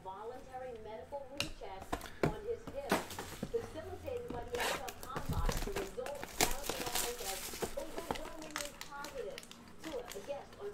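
Plastic and foil wrappers crinkling, with scattered short clicks and crackles, as trading cards in a plastic top loader and foil card packs are handled. Faint voices run underneath.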